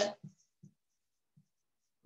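A voice breaks off at the start, followed by a few faint, brief sounds of a marker writing on a whiteboard.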